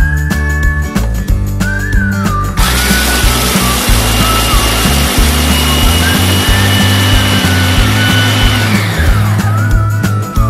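Small electric food chopper running, its blade grinding whole Oreo cookies into crumbs. It starts abruptly about two and a half seconds in, runs steadily, and winds down with a falling pitch near the end, under background music with a whistled tune.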